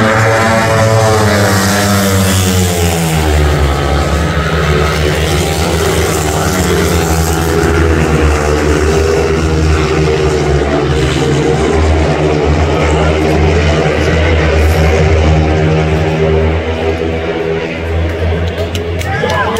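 Several long-track racing motorcycles, each with a single-cylinder 500 cc engine, running flat out in a pack. The engine pitch falls over the first few seconds as the bikes sweep through the bend, then settles into a loud, steady drone as they race down the straight.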